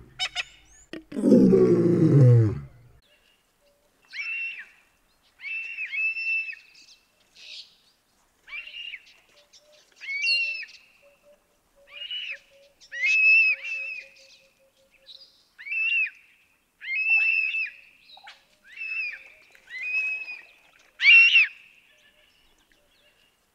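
African hawk-eagle calling: a long series of short, clear, high calls, each well under a second and a second or two apart, starting about four seconds in. Before the calls, near the start, comes a brief, loud, voice-like sound falling in pitch.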